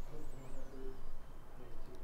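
Faint bird calls: low hoot-like notes and a short high wavering call near the start, over quiet room tone.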